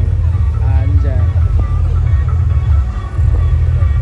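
A loud, steady low rumble, with faint voices and music behind it.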